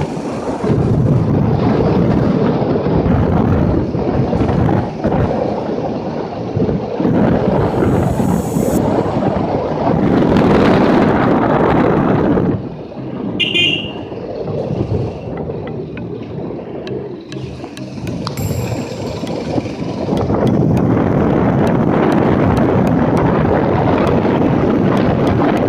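Wind rushing and buffeting over the microphone of a moving motorcycle, a dense steady rumble. It eases and turns uneven for several seconds past the middle, then picks up again.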